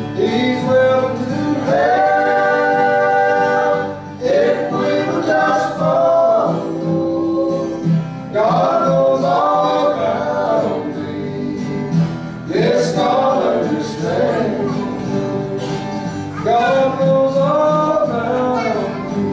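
A men's vocal group singing a gospel song in harmony with guitar accompaniment, the sung phrases coming in about every four seconds.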